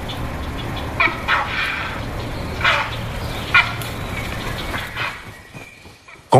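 Grey heron giving four short calls in the first four seconds, over a steady low hum. The sound fades away near the end.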